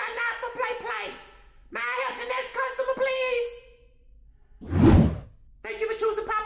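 Wordless voice sounds, then a single loud whoosh lasting under a second, about five seconds in.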